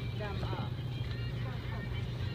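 Steady low hum of a grocery store's background noise, with a faint voice briefly about half a second in.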